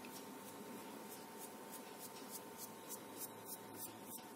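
Paper quilling strip being wound onto a slotted quilling tool: faint, even rustling and rubbing of paper, about five soft strokes a second.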